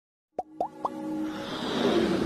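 Animated logo intro jingle: three quick rising pops about a quarter second apart, then a swelling electronic build that rises in loudness.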